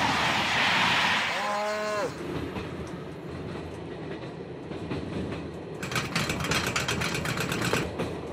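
Cartoon train sound effects: a passing train with a loud rushing noise, a short horn-like hoot that drops in pitch at its end about a second and a half in, then the steady rumble of the train from inside the carriage. In the last two seconds a rapid run of sharp clicks or taps joins the rumble.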